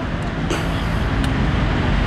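Road traffic on a city street: a low, steady motor-vehicle rumble with a faint engine hum.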